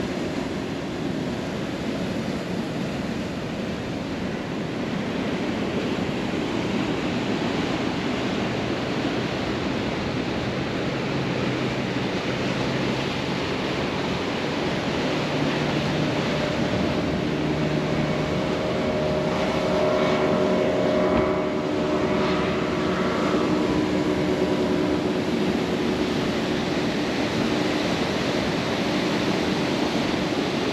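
Sea surf on the rocks with a steady wash of noise. From about a third of the way in, an engine's steady hum joins it and is strongest around the middle.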